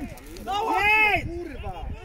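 A man's loud shout: one drawn-out cry from about half a second in to just past a second, followed by fainter shouting.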